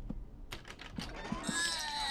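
Several quick light clicks of a door handle, then a pitched squeak sliding downward as the door creaks open on its hinges.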